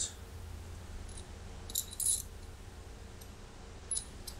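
Small steel hardware being handled: a bolt and washer clink together in a few brief, light metallic taps about two seconds in and once more near the end, over a steady low hum.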